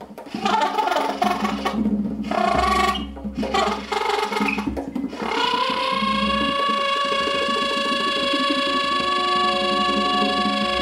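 Free-improvised music on soprano saxophone with percussion. First come short, broken bursts of sound. About halfway in, a long steady tone with many overtones begins with a slight upward slide and is held.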